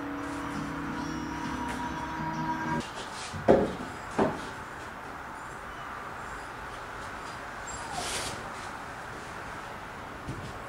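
Background music that stops abruptly about three seconds in, followed by two sharp knocks less than a second apart, then quiet handling sounds.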